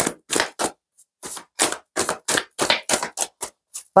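A deck of tarot cards being shuffled by hand, the cards landing in a run of short slaps about three a second.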